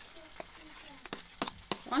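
A metal spoon scraping and clicking against a bowl while stirring a thick ketchup-and-honey sauce, about five irregular sharp clicks.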